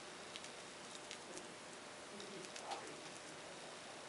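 Faint steady hiss with a scattering of light ticks and taps, the loudest about two-thirds of the way in: a stiff scruffy paintbrush dabbing paint onto a wine glass as the glass is turned.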